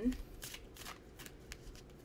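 A deck of oracle reading cards (the Sacred Power Reading Cards) being shuffled by hand: a run of soft, irregular card flicks and rustles.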